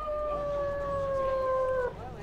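Haunted-house wolf-howl sound effect: one long, steady howl that glides up at its start and sags slightly in pitch before stopping near the end.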